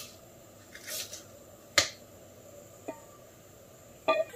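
Kitchen knife chopping coriander on a plastic cutting board: a few irregular sharp knocks of the blade on the board, the loudest a little under two seconds in.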